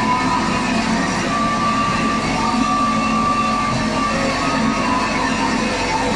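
A live band's guitar and electronics playing a loud, steady wall of distorted noise with a few held high tones running through it.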